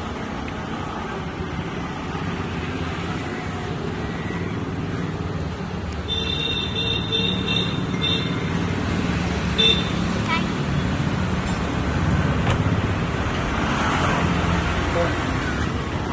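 Street traffic noise with voices in the background; a car horn sounds several short toots from about six seconds in and once more near ten seconds.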